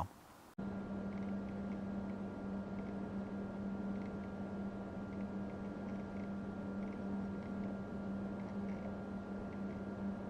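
Quiet, steady room tone recorded on the camera's own audio track during a lens focus-pull test: a constant low hum with faint hiss. No distinct autofocus-motor noise stands out.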